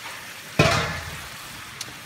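Mussels frying in hot butter in stainless steel pots, a steady sizzle with a sudden louder burst about half a second in that fades away over about a second.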